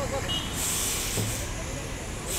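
A burst of high hiss, like air being released, starting about half a second in and lasting about a second, over background voices.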